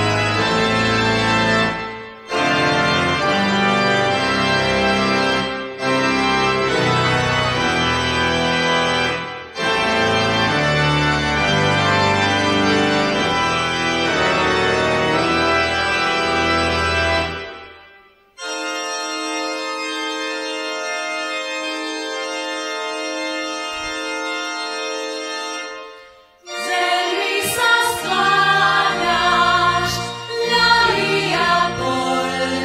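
Concert organ playing slow, full chords with deep bass in phrases separated by brief gaps, then, after a fade about 17 seconds in, a long held high chord without bass. Near the end, singing voices come in over it.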